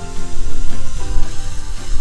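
Background music of steady held instrumental notes, with minced onions frying in a pan underneath as a continuous sizzle.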